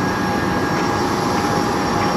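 Jet aircraft engine noise, a steady rushing hum with constant high whining tones and no change in pitch.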